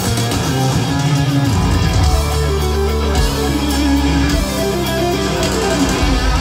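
Live hard rock band playing at full volume: electric guitar over bass guitar and drums, with long held bass notes that change every second or so. Heard from within the festival crowd.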